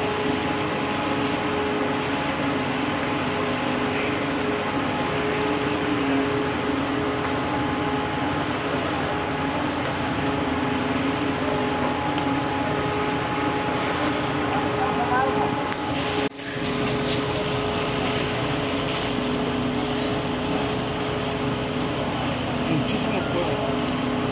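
Fire engine's pump engine running with a steady, even drone, over the hiss of a fire hose spraying water. The sound drops out sharply for an instant about sixteen seconds in, then carries on unchanged.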